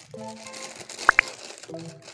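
Soft background music under the crinkle of a syringe's clear plastic packaging being handled, with two quick rising chirps about a second in.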